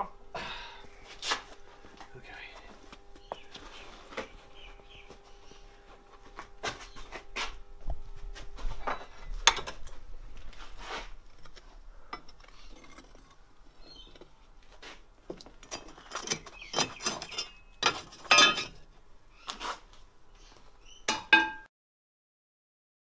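Steel tools clinking and knocking against the crucible and furnace rim while working molten aluminium: a scatter of sharp metallic clinks, coming thick and fast in the last few seconds.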